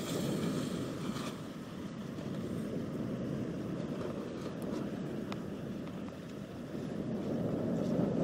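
Wind blowing across the microphone, a steady low noise that swells and eases slightly, with a couple of faint ticks about halfway through.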